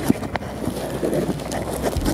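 Footsteps crunching on icy, snow-covered ground: a few irregular sharp knocks.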